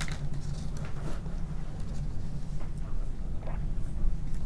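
Faint small clicks and rustles of fine jewellery wire being bent with pliers on a paper pattern, over a steady low hum.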